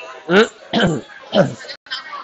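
A person clearing their throat, three short voiced sounds in quick succession.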